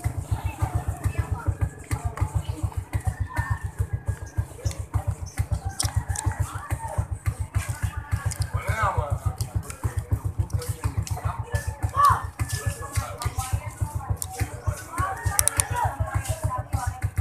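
Motorcycle engine idling with a steady, rapid low putter, with voices in the background.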